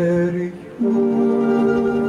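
Live voices singing two long held notes, the first ending about half a second in and the second beginning just under a second in after a short break.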